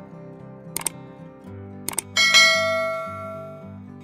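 Subscribe-button animation sound effects over soft background music: two quick double mouse clicks, about a second and two seconds in, then a bright bell chime that rings out and fades over about a second and a half.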